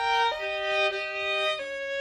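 A Stradivarius violin playing slow, held notes, sometimes two at once, moving to a new note every half second or so.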